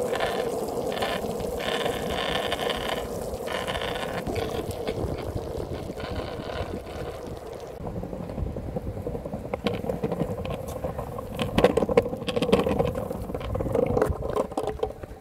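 Longboard wheels rolling on asphalt, a steady rolling hum. From about two-thirds of the way through, the board runs over brick pavers and the roll turns rough, with quick clacks and rattles over the joints.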